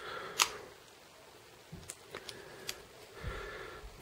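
Meyerco Rescue One folding knife being handled: a sharp click of the blade and lock about half a second in, then a few fainter ticks as the blade is folded and worked again. The blade has just failed to seat fully when opened.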